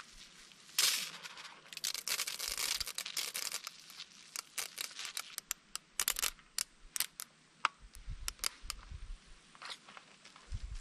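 Plastic clicks, knocks and scraping from a Kärcher pressure washer's trigger gun and spray lance being handled and fitted together. There is a rasping rustle about a second in and again from about two to three seconds in, then scattered sharp clicks.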